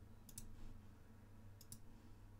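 Quiet computer mouse clicks, two pairs of clicks over near silence with a faint steady low hum.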